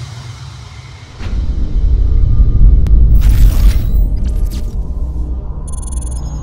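Music fading out, then a deep cinematic boom about a second in that opens onto a sustained low rumble. A whooshing sweep follows midway and bright shimmering tinkles come near the end: a logo-reveal sound effect.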